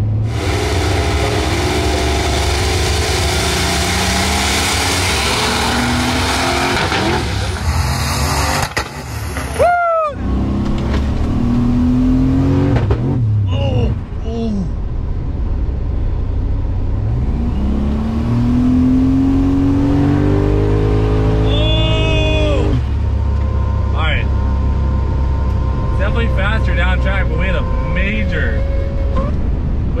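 Boosted drag car accelerating hard at full throttle down the strip, heard from inside the cabin, its pitch climbing through the pass. About ten seconds in a heavy backfire bang cuts the run short and the engine drops away, then runs on at lower revs as the car rolls out. The backfire comes from a tuning issue that the driver later thinks may be a lost crank signal or a low-oil-pressure timing pull.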